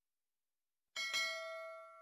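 Notification-bell sound effect: after a second of silence, a bell-like ding strikes, with a second quick strike just after, and rings out in several clear tones, fading away.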